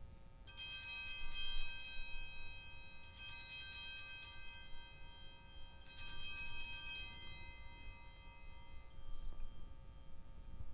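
Altar bells rung three times at the elevation of the chalice after its consecration. Each ring is bright and many-toned, starts suddenly and fades over a couple of seconds, and the rings come about three seconds apart.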